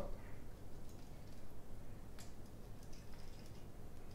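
Faint handling of plastic siphon tubing and a racking cane at a glass jug: a few light clicks and taps, the sharpest about two seconds in, over a low room hum.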